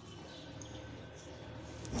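Faint steady outdoor ambience at a cricket ground, with a low hum underneath and no distinct sounds.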